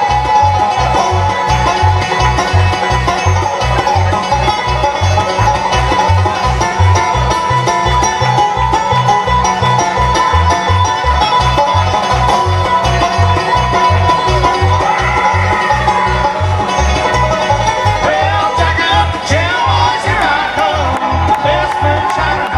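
Bluegrass band playing an instrumental break, five-string banjo out front over fiddle, mandolin and guitar, with a steady bass pulse underneath.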